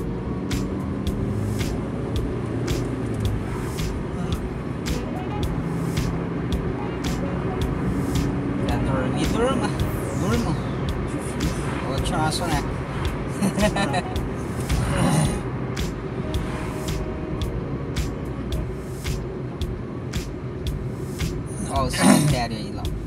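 Cabin sound of a Fiat Uno Mille driving at a steady speed: a steady engine hum and road noise, with frequent short clicks and rattles.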